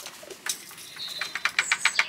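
Chickens at scattered seed: a quick run of light sharp taps, about ten a second, starting about a second in, with a few short high squeaks over them.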